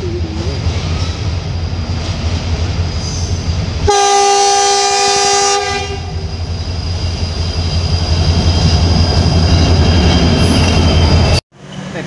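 An approaching train: the locomotive sounds one long horn blast about four seconds in, lasting under two seconds, over a steady low rumble that grows louder toward the end. The sound cuts off suddenly just before the end.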